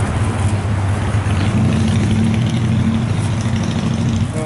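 Street traffic: a motor vehicle engine running with a steady low hum, and a steady higher tone joining in about a second and a half in.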